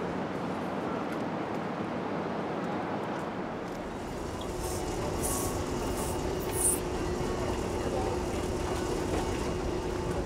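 An even background noise, then, about four seconds in, airport baggage hall ambience: a moving baggage carousel running with a low rumble and a steady hum, distant voices, and a brief knock midway.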